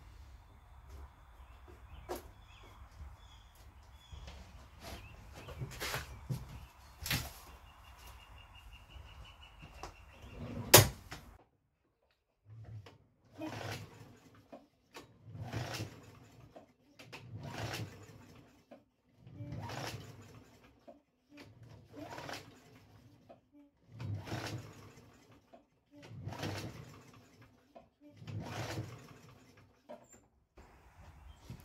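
Briggs & Stratton push-mower engine cranked by its recoil starter, about eight pulls roughly two seconds apart, each a short whir of the rope and turning engine with no firing. The engine does not start, a sign the speaker puts down to a carburetor gummed up from sitting. Before the pulls come some clicks and knocks, the loudest near the middle.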